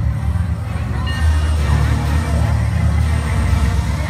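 Many people talking at once over loud amplified music with a heavy, pulsing bass.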